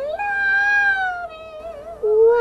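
A singer holding one high, wordless note that sags slightly in pitch, then wavers on a lower tone near the end.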